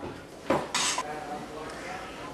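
Metal spoon stirring potato salad in a stainless steel mixing bowl: a clink and a scrape of spoon against bowl about half a second in, then quieter stirring.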